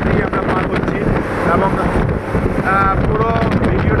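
Steady rush of wind and road noise from a vehicle driving at speed, with a brief voice rising out of it near three seconds in.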